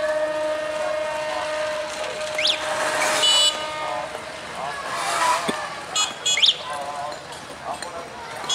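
A diesel locomotive's horn sounds one long steady note for about four seconds as the train approaches, with a short high-pitched toot about three seconds in. People's voices can be heard alongside.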